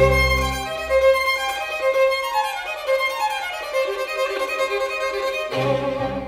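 Solo violin playing a fast virtuoso passage, with a run falling in pitch in the middle. A string ensemble sounds a strong low chord at the start, drops out, and comes back in with repeated low chords near the end.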